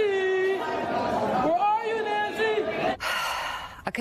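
A man calls out twice in long, drawn-out shouts that echo in a stone corridor, each held on a sliding pitch. A brief rush of noise follows and fades near the end.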